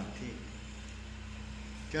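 Steady low background hum with faint room noise in a short gap between men's speech.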